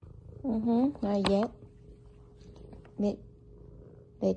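A house cat purring, with a low steady rumble, close to the microphone. Short pitched calls come twice about half a second in and once more near three seconds.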